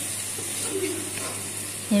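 Onion-and-spice masala sizzling steadily in a non-stick frying pan, with the light scrape and tap of a wooden spatula stirring it.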